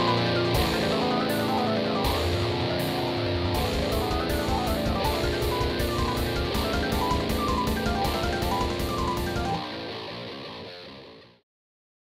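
Rock music with electric guitar and drum kit, with a steady beat of hits at about three a second; it fades out near the end and stops just before the last half-second.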